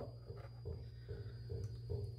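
Quiet handling sounds: a wooden board set down in a metal tray of water and lifted out again, with a few faint knocks over a low steady hum.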